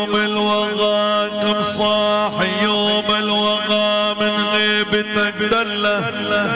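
A live Middle Eastern wedding band plays an instrumental melody that slides between notes over a steady low drone.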